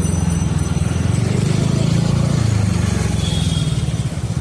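Street traffic: the steady low engine rumble of nearby motorcycles and cars.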